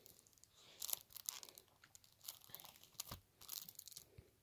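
Faint plastic crinkling and light clicks as a shrink-wrapped CD jewel case is handled, in scattered short crackles.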